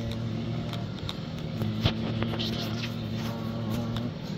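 Air fryer running at 360 °F in the last minute of its cooking cycle, its fan giving a steady hum, with a light click about two seconds in.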